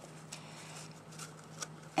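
Faint handling of hole-punched paper leaves as a wooden toothpick is worked through the holes: a few light clicks and soft paper sounds over a low steady hum.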